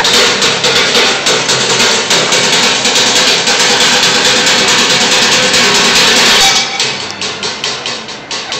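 Bucket drumming with sticks on upturned plastic five-gallon buckets and pans: a fast, dense run of hits that thins out to separate, spaced strokes about six and a half seconds in.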